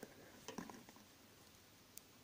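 Faint clicks of metal knitting needles working stitches, a few light ticks in the first second and one sharper click near the end, otherwise near silence.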